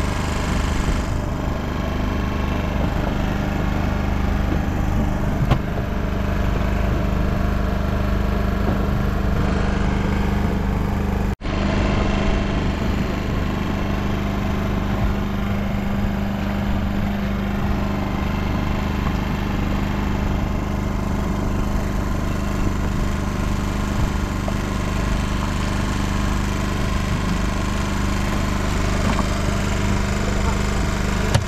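An engine on a small fishing boat running steadily at a constant low hum, with a momentary gap about eleven seconds in.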